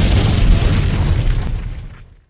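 A sudden loud boom-like burst of noise, heavy in the low end, holding strong and then dying away over the last half second.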